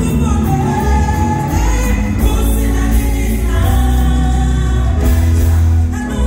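Live gospel music: a group of singers with a lead vocalist, backed by a band with keyboards and a heavy bass line.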